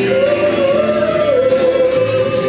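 Live female vocalist singing into a microphone, holding one long note, with electric guitar accompaniment.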